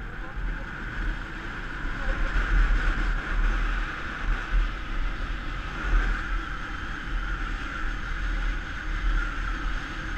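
Wind buffeting the microphone of a camera mounted on a moving motorcycle, with the motorcycle's engine and road noise running steadily underneath at cruising speed.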